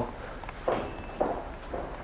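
Footsteps walking away at an unhurried pace, soft knocks about every half second.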